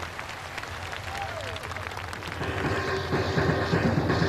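Large crowd applauding between songs. About two and a half seconds in, the instrumental introduction of the next number starts, with steady held tones and percussion beats.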